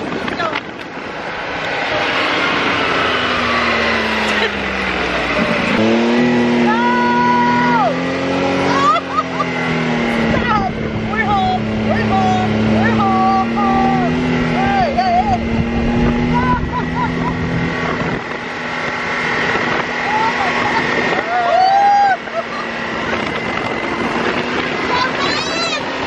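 Side-by-side dune buggy's engine running under way. Its pitch sinks slowly, then jumps up about six seconds in as it pulls away and holds steady. Short, high voice-like cries come and go over it.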